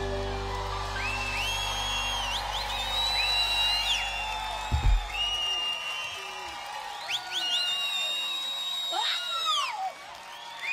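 A live band's final chord rings out and stops on a last loud hit about halfway through. An audience cheers and whistles throughout.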